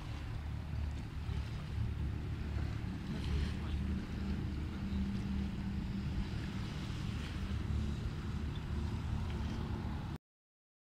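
A steady low engine drone over the lake, with wind rumbling on the microphone.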